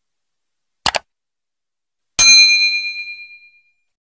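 A quick double mouse-click sound effect, then about a second later a bright bell ding that rings out and fades over about a second and a half: the click-and-notification-bell sound of a subscribe-button animation.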